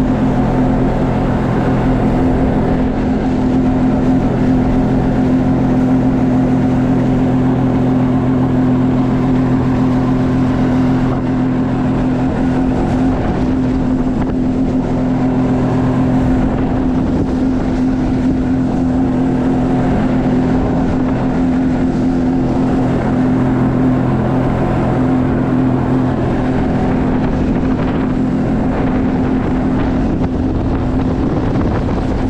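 Sea-Doo personal watercraft engine running steadily under way, holding an even pitch throughout.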